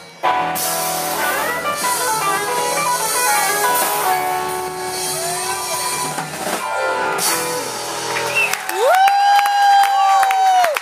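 Live rock band playing, with electric guitars bending notes over drums and keyboard. Near the end the band drops out, and a single electric guitar note slides up and is held as a long sustained final note.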